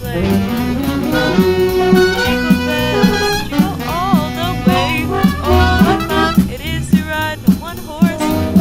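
Small jazz-style band playing a holiday tune: saxophone, trumpet and trombone carrying the melody over guitar, bass and drums keeping a steady beat.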